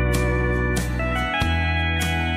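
Country waltz instrumental break: a steel-string acoustic guitar strummed on a steady beat, about one stroke every two-thirds of a second, under sustained lead notes that slide between pitches over held bass notes.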